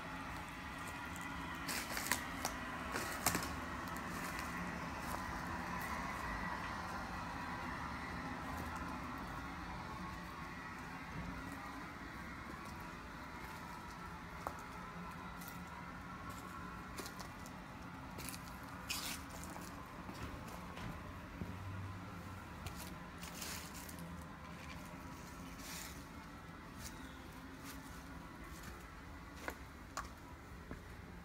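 Steady faint outdoor background hum with scattered light crackles and clicks of footsteps on dry leaf litter.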